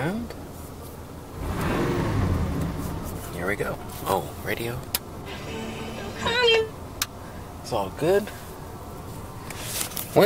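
Car radio being switched on and tuned: a rush of static, then short snatches of voices and tones from stations as the dial moves.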